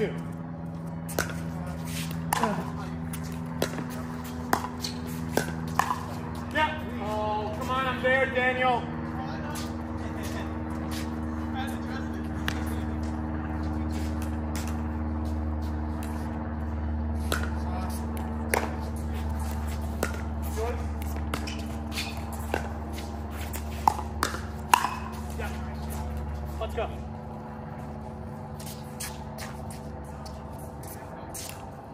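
Pickleball rally: paddles hitting the plastic ball in repeated sharp pops, over a steady low hum.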